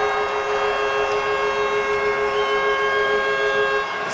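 Hockey arena goal horn sounding for a home-team goal: one long, steady, multi-note blast that cuts off just before the end.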